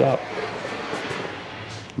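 A man's voice finishes a word at the start, then a steady hiss of background noise with no distinct event.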